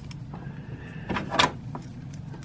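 Hands handling a small plastic action figure and its sword: faint rubbing, with a brief scrape about a second in.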